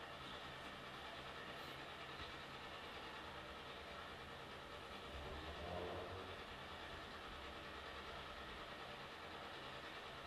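Faint, steady low hum of background room noise, swelling slightly a little past halfway.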